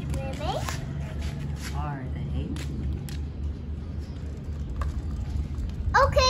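Brief high-pitched vocal sounds from a young child over a steady low rumble, with a few light clicks.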